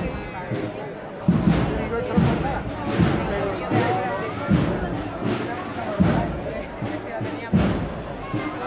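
Drums of a cornet-and-drum procession band beating a slow, steady march, one heavy stroke roughly every three-quarters of a second, with crowd voices around them.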